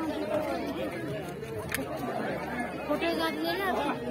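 Chatter of several people talking at once, with no other clear sound.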